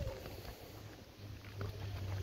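Quiet outdoor background: a steady low rumble, with a few soft footsteps on pavement.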